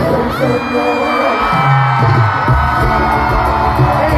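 Live concert music, loud and filling, with a cheering crowd around, picked up by a phone in the audience. The bass drops away for about the first second and a half, then comes back in.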